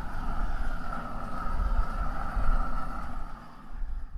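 Hand-held propane torch flame running steadily with a rumbling roar and hiss as it chars the skins of Hatch chiles on a grill; it drops off near the end.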